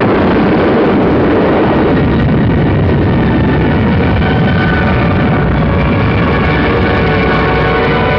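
A loud rumbling roar of a nuclear detonation, as laid on a film soundtrack, starts suddenly. Dramatic music swells in over it a few seconds later.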